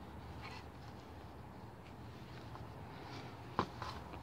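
Quiet room tone with a steady low hum, a few faint soft ticks scattered through it and one brief sharper click near the end.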